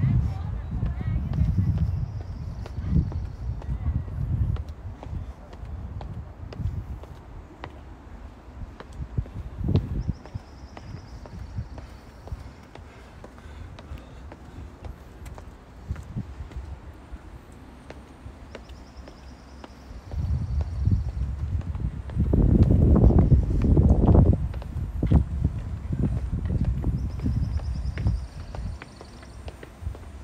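Outdoor street sound recorded while walking: irregular low rumbling and thuds, loudest for several seconds about two-thirds of the way through. A faint high tone recurs about every nine seconds.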